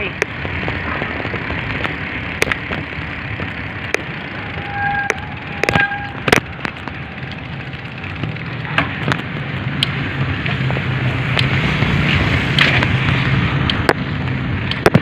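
Bicycle rolling along a concrete road, with tyre and frame rattle and wind on the handheld phone's microphone, and scattered sharp clicks throughout. Two short beeps sound about five and six seconds in, and the rumble grows in the second half.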